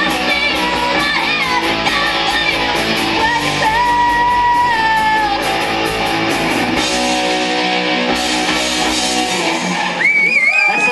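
Live rock band playing distorted electric guitars and drums with singing, with one long held note in the middle. About seven seconds in, the regular beat drops out and the music rings on as the song closes.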